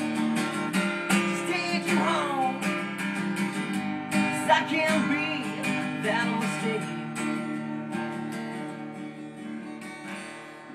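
Acoustic guitar strummed and picked in a steady rhythm, single melody notes picked over ringing chords, easing off a little toward the end.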